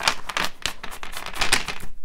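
Tarot cards being shuffled by hand: a quick, irregular run of card clicks and flicks.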